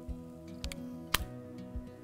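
Salt Supply S1 pepper spray gun's trigger pulled for the first time, breaking the seal on its CO2 cylinder: a sharp click about a second in, with fainter clicks just before. Light background music plays under it.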